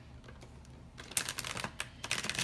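A quick run of small clicks and rustles starting about a second in, over a faint steady low hum.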